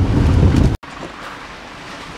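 Low, steady rumble of a moving car heard from inside the cabin, cut off abruptly under a second in. Then quieter wind noise buffeting the microphone outdoors.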